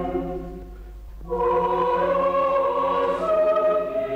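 Choir singing a Greek Orthodox liturgy in sustained chords: one chord fades out, and about a second in a new held chord begins, its voices stepping up in pitch near the end.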